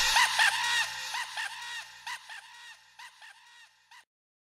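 The closing tail of a Brazilian funk track: a short, high-pitched vocal snippet repeats again and again as an echo, fading away, while a low bass note holds and then stops about halfway through.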